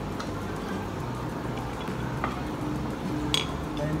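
A few light clicks and clinks of cutlery and dishes on a dining table, the sharpest about three seconds in, over faint background music.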